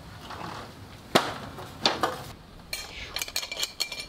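An aluminium ladder being handled: two sharp metal clicks a little over a second apart, then lighter clinks and a brief metallic ring near the end.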